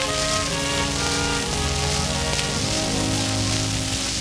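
Orchestral introduction of a popular song played from a 78 RPM record: held instrumental notes moving step by step, under a steady hiss and crackle of record surface noise.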